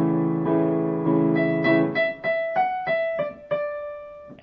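Casio CDP digital piano playing sustained chords that are re-struck a few times. About halfway through, it changes to single notes struck about three a second, settling on a held note near the end.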